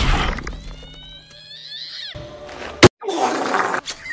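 Animated-film soundtrack of music and sound effects: a loud crash at the start, rising whistling glides, a sharp click, then a short burst of hiss near the end.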